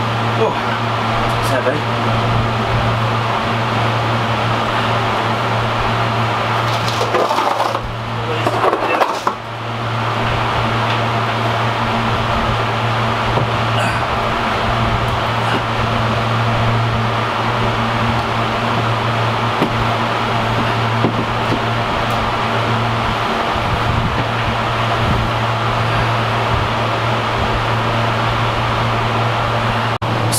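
Electric fan running with a steady low hum and airy rush. A short stretch of scraping and knocking comes about seven to nine seconds in.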